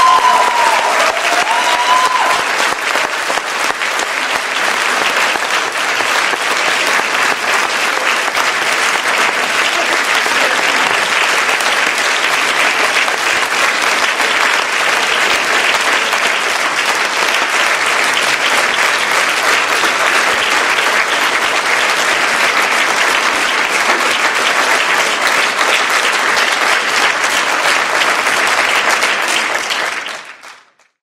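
Audience applauding: steady, even clapping from a large seated crowd after a choir performance.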